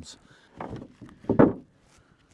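Two short scrapes of a stiff hand brush sweeping sawdust off freshly sawn Douglas fir boards, the second louder, about half a second and a second and a half in.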